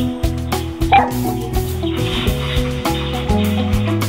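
A dog barks once, short and sharp, about a second in, over background music with steady held notes.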